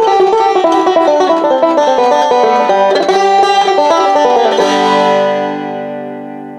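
Resonator banjo picking the fast closing bars of a fiddle reel. About four and a half seconds in it ends on a final chord that rings and fades away.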